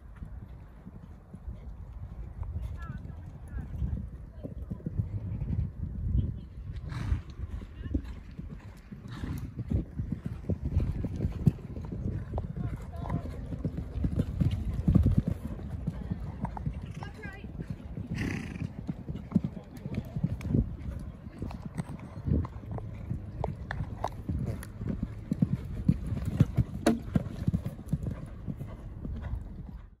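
Horse cantering on a sand arena: a run of dull, irregular hoofbeats on the soft footing, with other horses' hooves working nearby.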